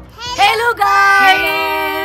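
A woman's and a young girl's voices calling out together in a long, drawn-out sing-song greeting, starting about half a second in.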